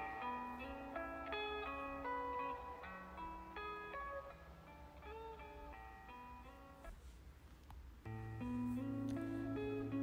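Soft background music of plucked guitar notes. It grows quieter in the middle, and a low bass note comes in about eight seconds in.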